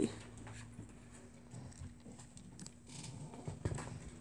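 Felt-tip marker writing on a textbook page: short scratchy strokes and light taps as a number is written and a box is drawn around it. A louder brush near the end as a hand settles on the paper.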